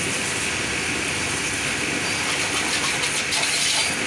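High-pressure water jet spraying onto a motorcycle's front wheel and forks: a steady hiss of spray and splashing.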